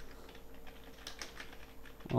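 Computer keyboard being typed on, a quick run of faint keystroke clicks, several a second, as a short phrase is entered.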